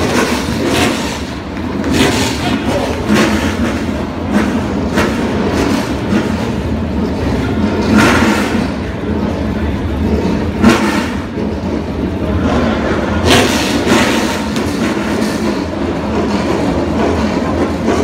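A field of NASCAR Whelen Euro Series stock cars' V8 engines running together on the grid just after being started, a steady low rumble with occasional brief revs standing out above it.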